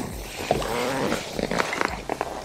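A smallmouth bass being handled and released over the side of a boat: short splashes and knocks in the second half. About half a second in there is a brief faint wavering pitched sound.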